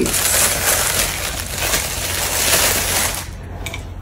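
Loud crinkling and rustling of a shiny plastic gift bag being rummaged through by hand, dying down a little after three seconds.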